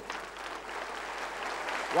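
Studio audience applauding after a correct answer, an even clapping that grows a little louder toward the end.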